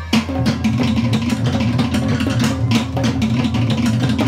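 Tahitian dance music: fast, dense drumming, many strikes a second, over a steady low bass.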